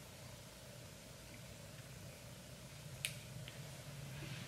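Quiet room tone with a low steady hum. About three seconds in, a sharp click and then a fainter one half a second later: a fingernail clicking against teeth.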